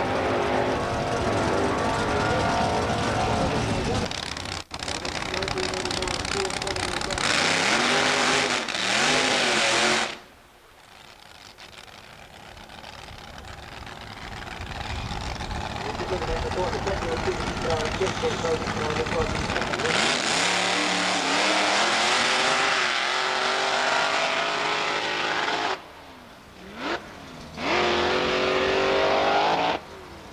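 Drag-racing sedans running at full throttle down the strip. The engine pitch climbs and falls back several times as the drivers shift gears. The sound cuts off abruptly a few times between runs.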